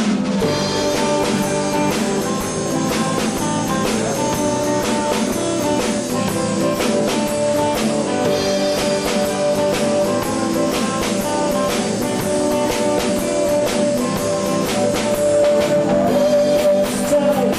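Band playing live: acoustic guitars over a drum kit with cymbal hits.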